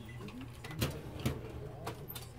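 Indoor store room tone: a steady low hum with faint murmured voices, broken by three short sharp clicks.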